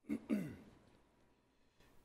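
A man clearing his throat once at a microphone: a short two-part sound near the start, the second part falling in pitch.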